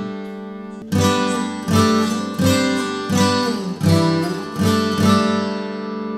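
Steel-string acoustic guitar in open DGCGCD tuning playing a phrase of moving chord shapes: a ringing chord fades, then from about a second in a new chord is struck about every three quarters of a second, each left to ring into the next.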